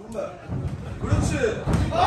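Dull thuds from two kickboxers' gloved strikes and footwork in the ring, several in a row from about half a second in, with voices calling out over them.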